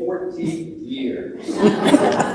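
Speech with chuckling laughter, the laughter loudest in the last half-second.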